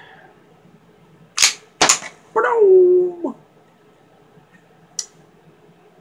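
Slide of an old Colt 1911 .45 pistol racked back and let go: two sharp metallic clacks about half a second apart, working the action to eject a chambered cartridge. A man's short wordless vocal sound follows, and a single light click comes near the end.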